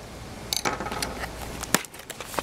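Small cardboard box handled and slid open by hand: a rustling scrape of card on card from about half a second in, with small clicks and one sharp tap near the end.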